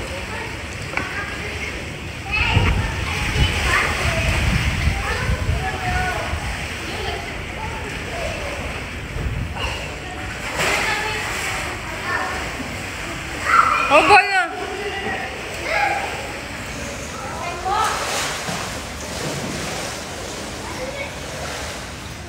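Water splashing and sloshing in a swimming pool as children swim and play, with children's voices throughout. A loud, high cry about two-thirds of the way through is the loudest moment.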